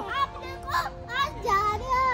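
Young children chattering and calling out as they play on a playground nest swing, over steady background music.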